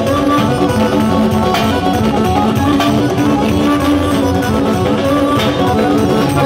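Live band music: an electronic arranger keyboard playing a melody over drums beaten with sticks.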